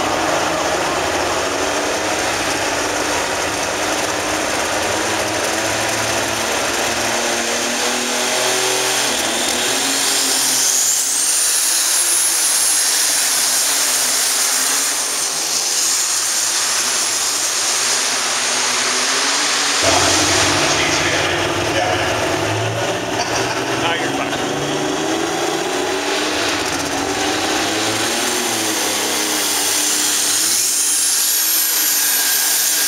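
Turbocharged diesel pulling tractor under full load on a pull: its turbocharger whine climbs to a very high, held scream about ten seconds in over the engine's noise, then drops away about twenty seconds in.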